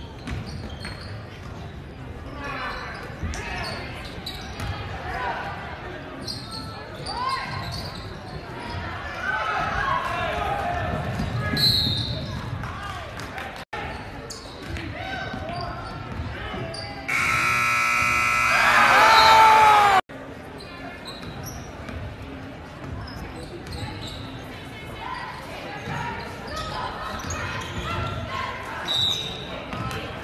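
Basketball game in a large echoing gym: a ball dribbling, sneakers squeaking on the hardwood and crowd voices throughout. A loud steady scoreboard horn sounds for about three seconds a little past halfway.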